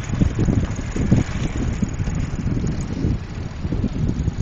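Wind buffeting the microphone of a camera moving along with a bicycle: a rough, uneven low rumble that rises and falls in gusts.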